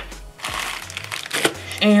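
A plastic bag of nail tips crinkling and rustling as it is picked up and handled, over background music with a low bass line.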